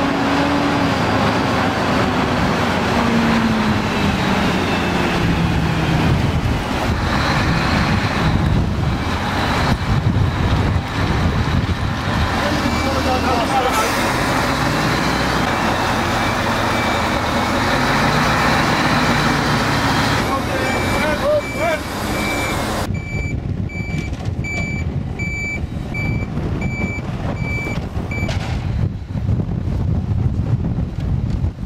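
Diesel engine of a multi-axle Terex-Demag all-terrain mobile crane running as it drives and manoeuvres, its revs falling and rising. In the latter part a reversing alarm beeps steadily over the engine.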